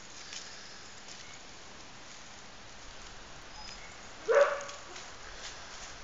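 A dog barks once, a short call rising slightly in pitch about four seconds in, over quiet outdoor background.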